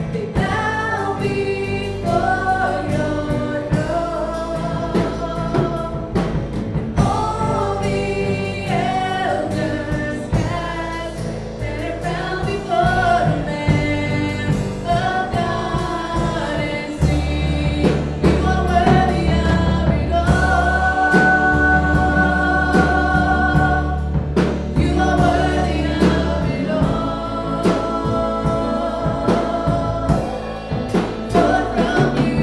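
Live worship band playing: female voices singing a melody in harmony over drums, keyboard and sustained low bass notes.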